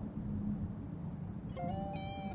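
A steady low rumbling background ambience, with soft lo-fi music notes coming in about one and a half seconds in.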